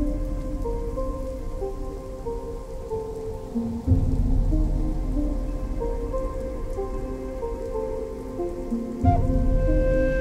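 Native American–styled new-age music over a steady rain sound effect, a slow melody of held notes on top. Deep booms come about four seconds in and again near the end.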